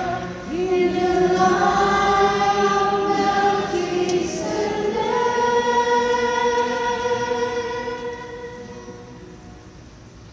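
Female cantor singing the responsorial psalm unaccompanied, ending the phrase on a long held note that fades away over the last couple of seconds.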